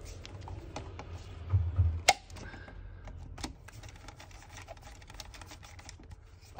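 Insulated screwdriver tapping and clicking on the terminal screws of a row of circuit breakers in a consumer unit, a scatter of small irregular clicks. A dull low thump comes about a second and a half in, followed by a single sharp click just after two seconds, the loudest sound.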